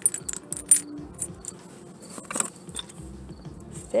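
Tiny metal buttons clicking and clinking together in a hand, several light clicks in the first second and a few more scattered after.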